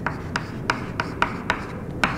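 Chalk writing on a chalkboard: a quick run of short taps and scrapes, about three or four strokes a second, as a word is written out.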